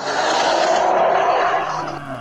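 A loud rushing, hissing sound effect without a clear pitch, lasting about two seconds and fading out near the end.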